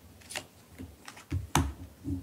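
Tarot cards being dealt and laid down on a table by hand: several short sharp taps and slaps, the loudest about one and a half seconds in.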